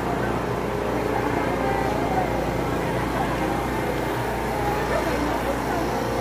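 A steady low engine drone under indistinct voices of people in a street crowd.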